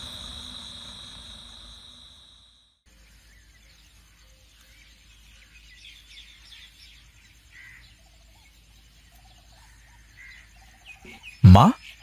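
Crickets chirring in a steady high trill that fades out over the first two and a half seconds, then faint outdoor morning ambience with soft bird chirps. A brief loud sound comes near the end.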